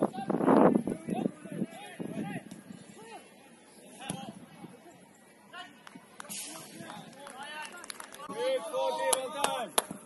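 Shouts of footballers and touchline voices during a match, heard from across the pitch, growing louder and more frequent near the end, with a few sharp knocks among them.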